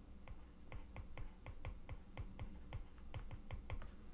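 A stylus tip tapping and clicking on a tablet's glass screen while handwriting a word: a faint run of light, quick clicks, several a second, with a low steady hum underneath.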